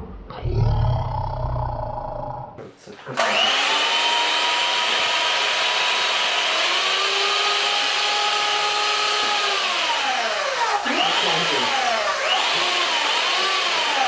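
Electric hand mixer's motor switched on about three seconds in, spinning up to a steady whine. Its pitch rises, then drops, then swoops down and up several times near the end as the speed changes.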